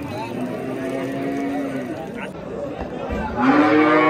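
Cattle mooing: a fainter drawn-out call in the first two seconds, then one long, loud moo starting about three seconds in.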